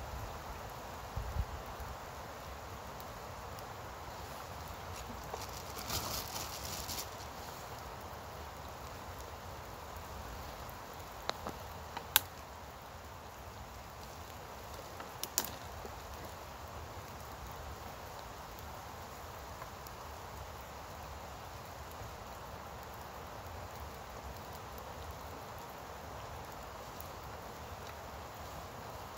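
A match struck on its box about six seconds in, a scratch and flare lasting about a second, then a few sharp clicks and snaps of handling over a steady soft background hiss.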